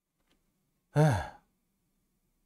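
A man's short breathy sigh voiced as "ei" (에이), falling in pitch, about a second in; silence before and after it.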